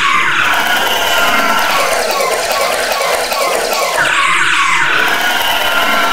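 Loud, harsh squealing noise in an experimental music track: a dense wash with short falling squeaks repeating about three times a second, and a longer falling sweep at the start and again about four seconds in.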